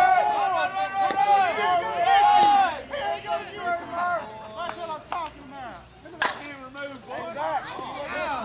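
Players shouting across the field, then about six seconds in a single sharp crack of a softball bat hitting the ball, with more shouting after it.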